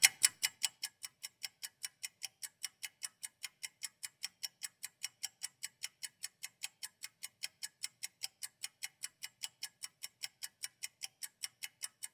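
Steady, even ticking, about five ticks a second, with the first tick the loudest.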